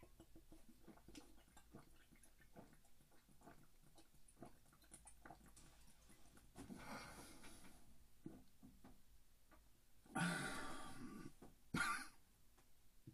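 A man swigging whiskey straight from a glass bottle: faint gulping and wet mouth clicks, a noisy breath partway through, then a loud breath out about ten seconds in and a short second one near the end as he lowers the bottle.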